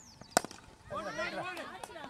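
A cricket bat striking a cricket ball: one sharp crack, followed about half a second later by several voices shouting.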